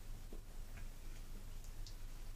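Quiet room tone with a few faint, irregular ticks.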